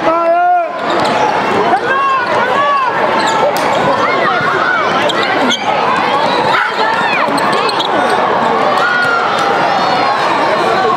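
Sneakers squeaking on a hardwood basketball court, many short rising-and-falling squeals, with a basketball bouncing and a couple of sharp knocks about halfway through. Voices from players and spectators run underneath, with a call right at the start.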